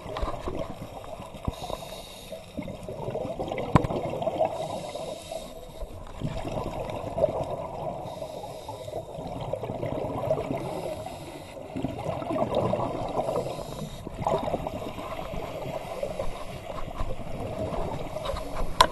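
Scuba divers' exhaled bubbles and regulator breathing heard underwater, a muffled bubbling rumble that swells and fades in surges every few seconds. A single sharp click about four seconds in.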